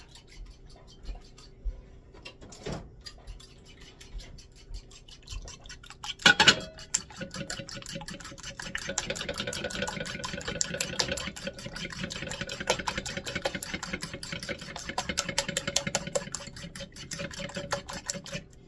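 A fork beating eggs in a ceramic bowl, clicking rapidly and evenly against the bowl's sides from about seven seconds in. One louder knock, just before the beating starts.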